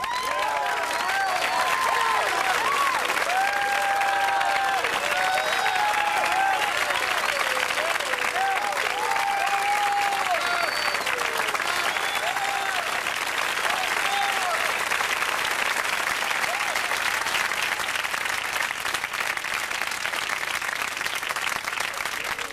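Studio audience applauding, with whoops and shouts over the clapping for most of the first two thirds; the clapping carries on and thins a little near the end.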